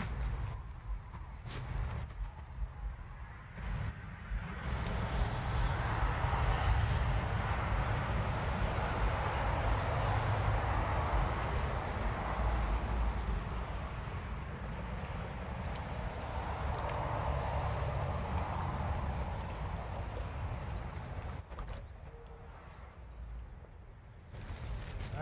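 Road traffic passing: a rushing noise of tyres and engine over a low rumble, swelling about five seconds in and fading away near the end.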